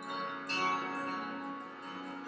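Several bells ringing together, their tones overlapping and ringing on, with fresh strikes at the start and again about half a second in.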